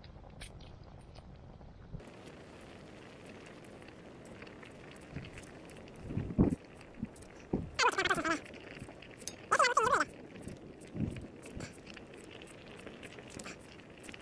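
Knife slicing a cucumber over a small metal bowl, with a wood campfire crackling. Two short, loud, pitched calls that fall in pitch stand out about eight and ten seconds in; their source is unclear.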